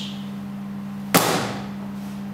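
A single sharp knock on a wooden tabletop about a second in, as an object is brought down hard, with a short ringing tail. Under it runs the steady hum of an overhead projector that is switched on.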